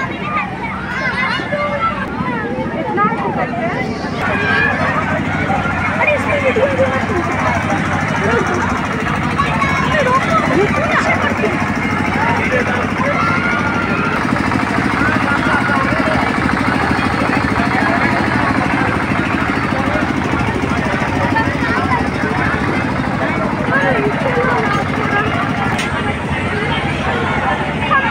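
Crowd hubbub: many people talking and calling out at once, a dense babble of overlapping voices, over a steady low hum.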